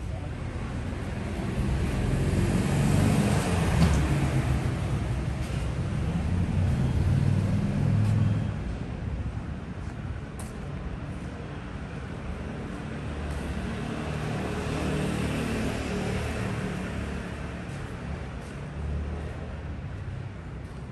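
Street traffic: motor vehicles passing close by, a low engine rumble with tyre hiss that swells twice, once in the first half and again just past the middle.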